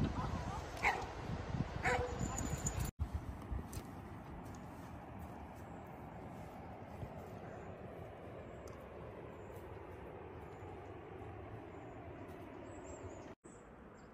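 A dog gives a couple of short yips in the first few seconds. After that comes only a faint, steady outdoor background hiss.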